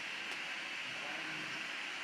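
Steady, even hiss of room tone with no distinct event.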